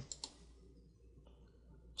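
Near silence with a faint computer mouse click or two near the start, over a low steady room hum.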